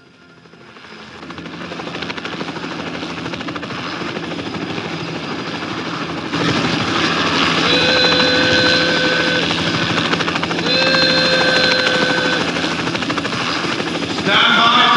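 Helicopter engine and rotor running steadily, fading in at first and growing louder about six seconds in. Twice over it, a long held tone sounds, each lasting under two seconds.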